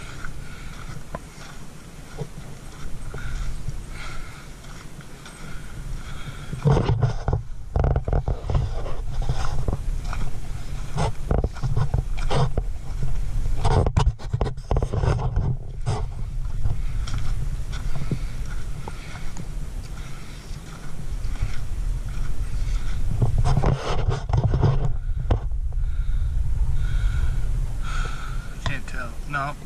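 Footsteps crunching on a loose gravel dirt road, with wind rumbling on the microphone. The crunching comes in louder spells partway through and again near the end.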